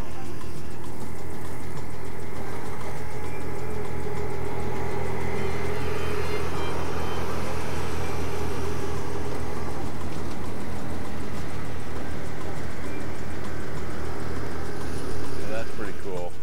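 A Fendt narrow vineyard tractor runs steadily past with its vine trimmer and flail mower working the sides of the grape rows. It is loudest around the middle, as it passes closest.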